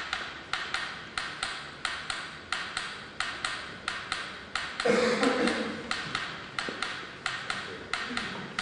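A steady run of sharp taps or clicks, about three a second, with a brief louder voice sound about five seconds in.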